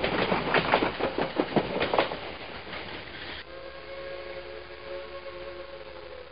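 A train: a rhythmic clatter of knocks, then, about three and a half seconds in, a steady whistle sounding a chord of several tones.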